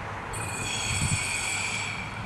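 Siemens Desiro Classic diesel railcar's wheels squealing as it rounds a curve: a high-pitched, many-toned squeal starting about a third of a second in and fading near the end, over the low running of the railcar.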